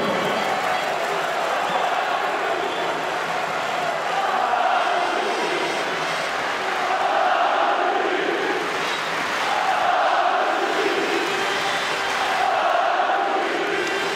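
Arena crowd of tennis fans chanting in unison, the chant swelling and falling about every two and a half seconds over the steady noise of the crowd.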